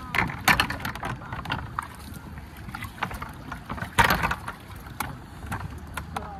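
Scuffs and sharp knocks as people climb from a rock into an inflatable rubber raft, the loudest knock about four seconds in.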